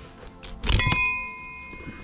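A screwdriver prying at the shift lever in the metal shifter mount of a BMW E46's shift linkage: under a second in, a single sharp metallic clang that rings on for about a second as the metal parts strike and spring apart.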